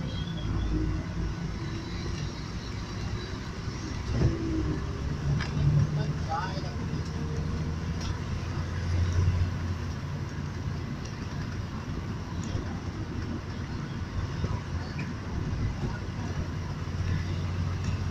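Engine and road noise of a moving vehicle heard from inside the cabin: a steady low drone that swells a couple of times over a haze of tyre and traffic noise.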